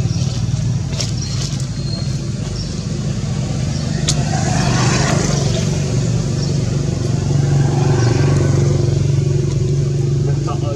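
A steady, loud low drone like an engine running, with a couple of sharp clicks about one second and four seconds in.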